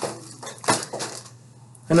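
A few short clinks and knocks of hard objects being handled and set down, bunched in the first second, the loudest about two-thirds of a second in.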